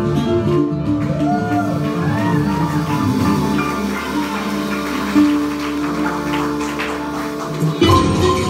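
Live band playing a Latin dance number, led by a synthesizer keyboard whose notes bend up and down in pitch, over drums and percussion.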